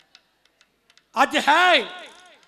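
A short pause in a man's speech holding a few faint ticks, then about a second in the man's voice comes back loud, rising and falling in pitch as he declaims into the microphone.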